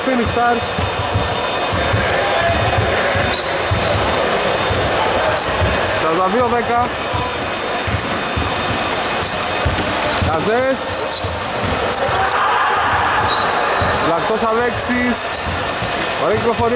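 A basketball being dribbled and bounced on a wooden hall floor during play: repeated low thumps throughout, mixed with players' voices in a large, reverberant hall.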